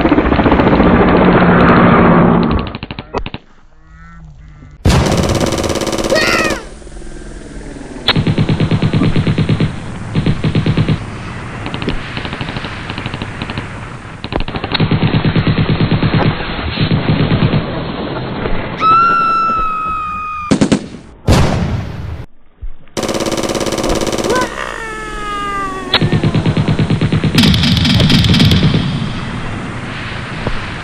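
Dubbed-in war sound effects: bursts of rapid machine-gun fire and gunshots, spliced together in segments with abrupt cuts. Whistling tones come in about two-thirds of the way through, some falling in pitch.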